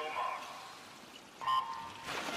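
Start of a backstroke swimming race: a short, loud electronic starting beep about one and a half seconds in, preceded by the tail of the starter's spoken call.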